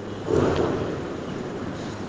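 Steady background hiss of the recording with no words, and a brief soft swell of noise about half a second in.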